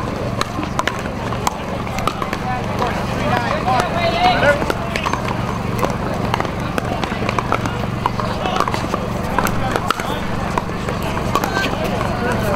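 Voices of players and spectators talking, with sharp pops of pickleball paddles hitting the plastic ball scattered through. A steady low hum runs underneath.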